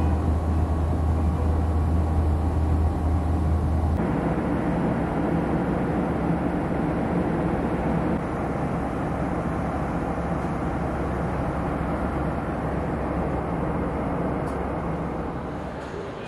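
Airliner cabin noise in flight: the steady rush of jet engines and airflow. About four seconds in it changes abruptly, from a deep hum to a broader, even rush.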